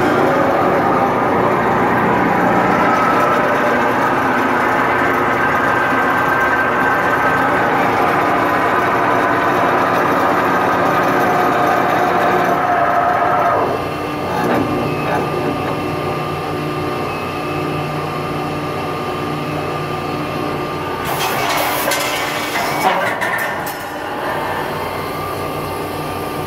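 Accurshear hydraulic power shear running, its 10 horsepower electric motor and hydraulic pump giving a steady hum and whine that drops in level about 14 s in. A hiss rises about 21 s in and lasts around two seconds.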